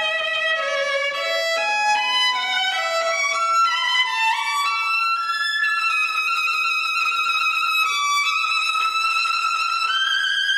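Solo violin played unaccompanied: a quick rising run of short notes in the first half, then long, high sustained notes with vibrato.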